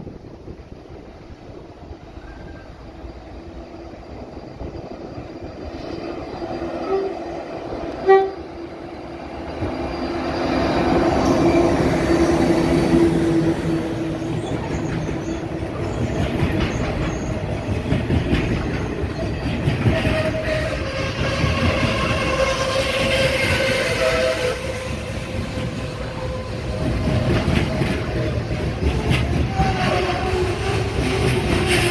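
A freight train approaching and then passing close by: the sound builds over the first ten seconds, a short horn note sounds about eight seconds in, and the long string of hopper wagons then rolls past with wheels clacking over the rail joints.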